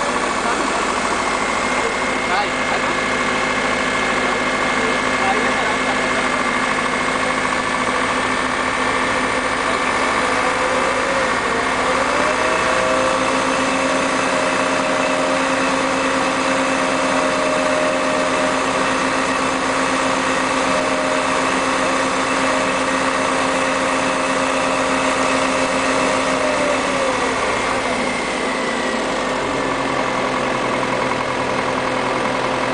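Engine of the bungee crane idling steadily, a constant hum with a whine that bends slightly in pitch now and then, as the jumper is lowered.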